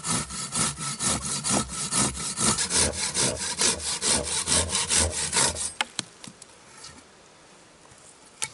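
Silky BigBoy folding pruning saw cutting a V-notch into a sapling in quick back-and-forth strokes, about five a second. The sawing stops shortly before the six-second mark, followed by a few light knocks.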